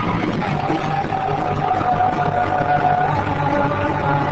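Garage rock band playing live: electric guitar over a steady bass line. A long held high note runs through most of the stretch.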